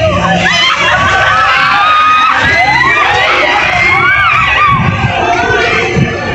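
Riders on a large spinning amusement-park ride screaming and shouting together, many voices overlapping and sliding up and down in pitch.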